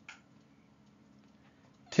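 Near silence: faint room tone, then a voice starts speaking near the end.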